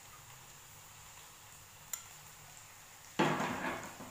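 Chopped bell peppers, garlic and onion frying quietly in a nonstick frying pan, a faint steady sizzle. A single click about two seconds in, and a short, louder rush of noise near the end that fades within a second.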